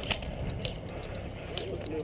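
About four scattered sharp clicks of airsoft guns firing, over a steady low rumble.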